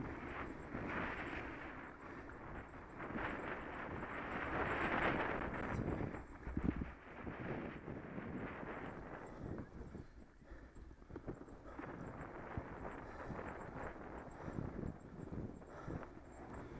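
Bicycle riding along a rough tarmac path: tyre noise and an uneven rushing, with a rapid, irregular rattle of the bike over the bumps. The rushing swells about halfway through.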